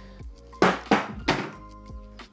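A smartphone in a Casetify Ultra Impact case dropped onto a painted wooden floor: it lands and bounces, giving three thuds within about a second, the first about half a second in. Background music plays throughout.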